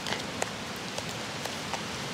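A spoon stirring and scraping a crumbly almond-flour bannock mix in a small plastic bowl, with a few light clicks, over a steady hiss of wind.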